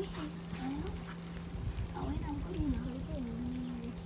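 A voice murmuring indistinctly, ending in a long held low hum, over a steady low hum and low rumble.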